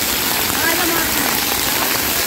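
Water from splash-pad ground fountain jets spraying up and pattering down onto the wet floor, a steady hiss of falling water.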